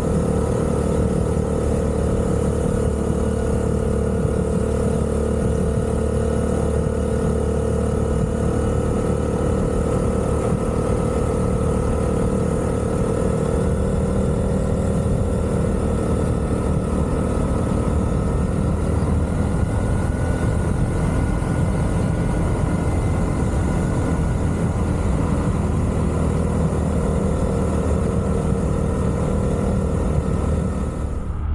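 Small single-cylinder engine of a 2024 Honda Navi mini-bike running steadily at cruising speed, heard from on board while riding, over an even rush of road and wind noise. The pitch holds nearly constant, rising slightly about two-thirds of the way through.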